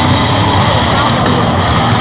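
Loud, steady roar of a packed arena crowd cheering and shouting, with a steady high tone running through it.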